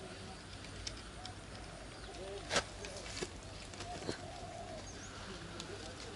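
A few sharp knocks, the loudest about two and a half seconds in, as a large striped catfish is handled and lifted on a landing net, over faint bird calls and low voices.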